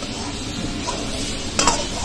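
Metal spatula stirring and scraping Manchurian balls in sauce around a metal kadhai over a gas flame, the food sizzling steadily. One sharper scrape or clank of the spatula against the pan comes near the end.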